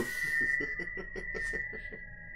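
Men laughing in quick, fading pulses over a steady high-pitched tone.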